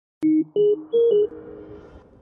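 A short electronic intro jingle: a sharp click, then four quick pitched notes stepping up and then down, leaving a ringing tail that fades out.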